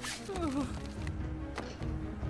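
A man whimpering in short, falling cries over background music from the animated episode's soundtrack.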